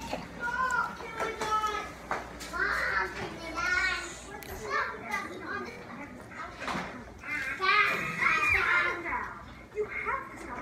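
Children talking and playing, their voices filling the whole stretch, loudest about eight seconds in.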